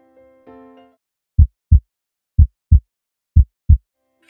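Soft electric-piano notes that stop about a second in, then a heartbeat sound effect: three deep double thumps, about a second apart.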